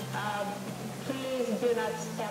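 Film soundtrack music with held low notes, with a voice over it, played back through the room's speakers.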